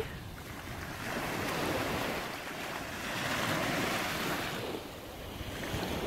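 Small waves of the Chesapeake Bay washing onto a sandy shore, swelling and easing twice, with some wind on the microphone.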